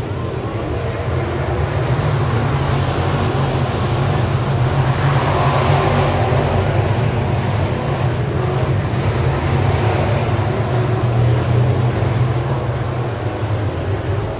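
Pack of dirt late model race cars running laps on a dirt oval, their V8 engines loud and continuous. The sound builds over the first few seconds and stays strong as the field comes past.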